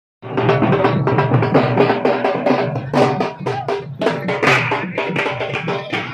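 Folk dance drumming on a metal-shelled barrel drum, beaten in a fast, steady rhythm of about four strokes a second, with a steady pitched melody line sounding along with it.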